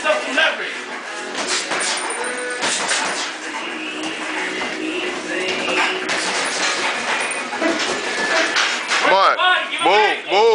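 Boxing gloves landing on headgear and body in a string of sharp impacts during sparring, over a gym background of voices and music.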